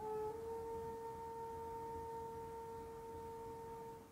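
Quiet meditation background music: one soft, pure-sounding held note that steps up a little in pitch just after the start, holds steady, and stops near the end.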